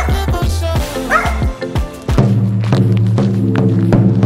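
A small dog barking behind a gate, two short barks in the first second or so, over background music; about two seconds in the barking stops and the music runs on with steady, bass-heavy sustained notes.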